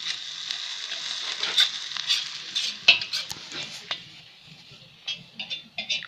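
Chopped onion and carrot sizzling as they fry in oil in a kazan, with a metal skimmer scraping and clicking against the pot as they are stirred. The sizzle fades about four seconds in, leaving a few faint clicks.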